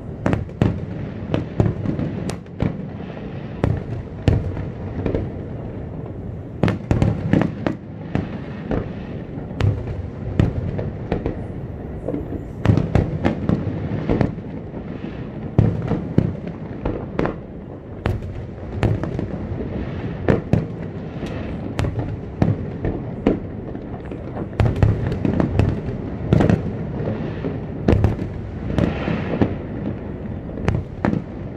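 Aerial fireworks display: a dense, irregular string of sharp bangs and crackling bursts over low rumbling booms, several reports every second and no let-up.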